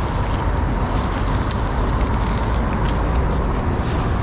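Steady road traffic on a busy street, a continuous noise with a heavy low rumble.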